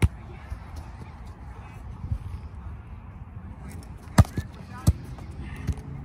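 A soccer ball on a solo trainer's elastic tether being kicked again and again: several sharp thuds of a boot striking the ball, the loudest right at the start and a quick pair about four seconds in.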